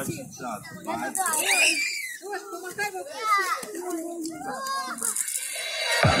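Young children's voices chattering and calling out while they play, with a high rising cry about one and a half seconds in.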